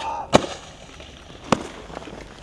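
Two sharp knocks about a second apart from a snowboard hitting a snow-covered metal handrail and the packed snow around it.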